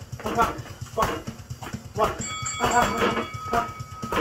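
Gloved punches landing on punching bags in quick irregular strikes, about two a second, with short vocal sounds over them. A steady high tone comes in about halfway through.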